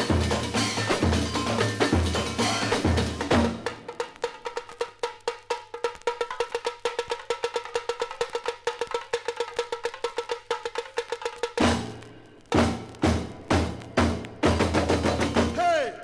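Samba bateria (percussion ensemble) playing on a 1962 vinyl LP: deep bass drums with the full ensemble, which drops out a few seconds in for a solo of fast, even, ringing strikes on a high-pitched percussion instrument. Near the end the full ensemble comes back in.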